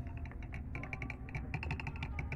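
Rapid, irregular light clicks and taps of long, hard acrylic nails knocking together and against things as the hand is handled.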